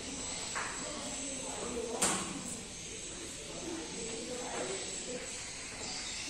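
Murmur of voices in a billiard hall, with one sharp click about two seconds in, typical of carom billiard balls striking.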